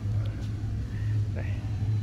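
A steady low machine hum runs throughout, with a short spoken word near the end.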